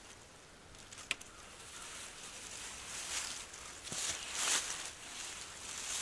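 Nylon mesh bug netting rustling in the hands as its clips are fastened onto a paracord ridge line, with a sharp click about a second in and softer rustles later.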